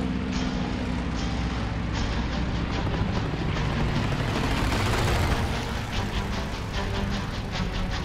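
Dramatized sound effects of a WWII propeller-fighter dogfight: aircraft engines running under music, with rapid gunfire-like cracks throughout. The engine noise swells to a peak about five seconds in, like a plane passing close.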